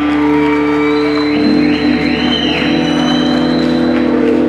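Live band music: long sustained droning tones, with sweeping pitch glides arching over them in the middle.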